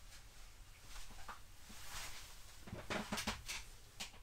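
Rustling and a few soft knocks and clicks as a person sits down at a table, the knocks bunched near the end, over a faint steady hiss.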